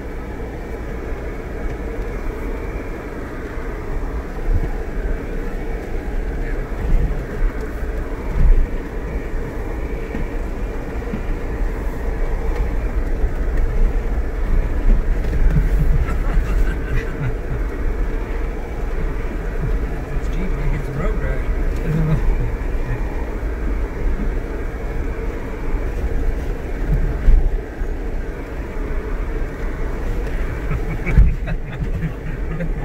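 Four-wheel-drive vehicle crawling along a rough dirt canyon trail, heard from inside the cab: a steady low engine and drivetrain rumble, with a few knocks from bumps in the track.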